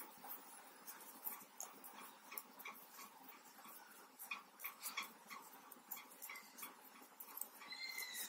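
Faint, irregular clicking of metal knitting needles tapping against each other as stitches are worked. A brief faint high-pitched tone sounds near the end.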